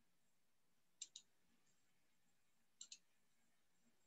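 Near silence with a few faint computer mouse clicks: a quick pair about a second in and another pair near three seconds.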